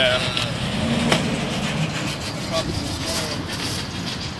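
A steady low rumble, like a motor running, under faint background voices, with one sharp click about a second in.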